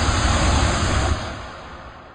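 Rushing whoosh sound effect with a deep rumble underneath, accompanying a video network's logo intro. It holds loud, drops about a second in and then fades away.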